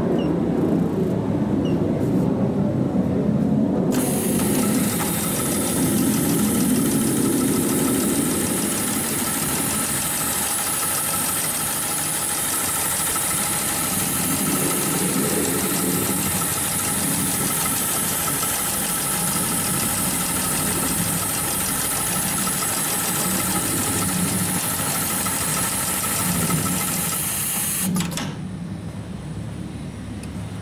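HighTex 71008 automatic pattern sewing machine running a programmed stitch cycle, sewing a box-and-X reinforcement pattern through thick harness webbing: a fast, even needle rhythm with a steady whine. The stitching starts about four seconds in, after a lower hum, and stops abruptly near the end.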